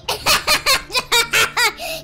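A person laughing, a quick run of short ha-ha pulses at about four a second.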